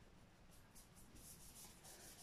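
Faint, quick swishes of a paintbrush stroking alcohol-thinned colour over fondant, repeated many times.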